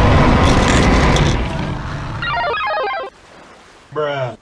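A loud, rough rumble for about two seconds, then a short electronic phone ringtone of quick beeping notes that cuts off a second before the end.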